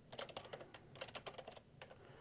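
Computer keyboard typing: a quick run of about a dozen light keystrokes.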